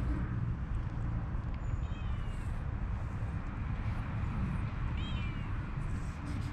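A cat meowing twice, two short high-pitched meows about two seconds and five seconds in, over a steady low background rumble.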